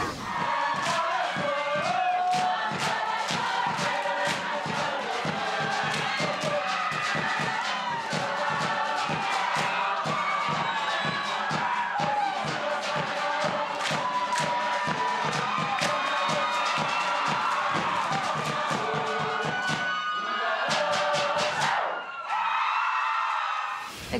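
A Samoan group performance: many voices chanting and singing together in unison over a quick, steady beat of sharp percussive strikes. The beat stops about twenty seconds in.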